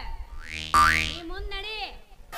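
Comic sound effect: a short rising whoosh, then a sudden springy boing that sweeps sharply upward in pitch over a low held chord. A brief stretch of a voice follows.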